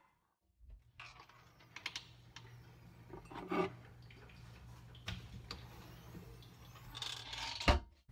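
Scattered clicks and knocks of objects and the camera being handled on a kitchen counter over a steady low hum, with the loudest knock just before the end.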